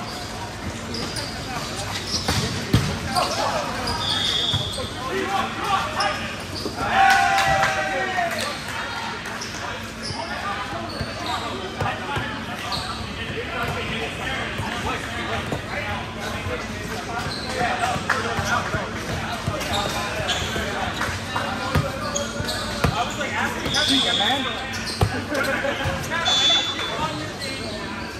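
Indoor volleyball gym din: players' shouts and chatter over repeated slaps of hands hitting the ball and balls bouncing on the court floor, with a loud shout about seven seconds in and a few short high squeaks.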